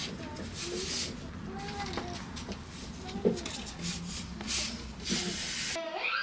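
Rustling in the hay and straw bedding of a rabbit hutch, in short scattered bursts, over a steady low background with faint voices in the distance.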